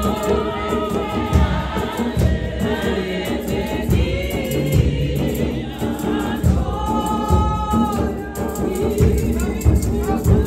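A church congregation of women and men singing a Xhosa gospel hymn together in full voice, with a deep beat underneath.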